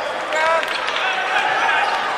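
A basketball dribbled on a hardwood court, bouncing in short knocks, over the voices and shouts of spectators in the gym.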